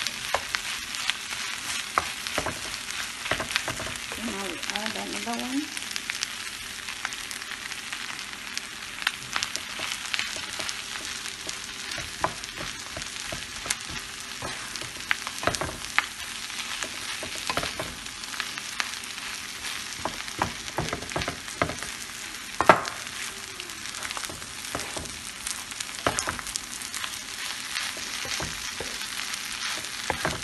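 Corned beef and shredded cabbage sizzling in a frying pan as a wooden spatula stirs and scrapes through it, with frequent taps of the spatula against the pan. One louder knock comes about three-quarters of the way through.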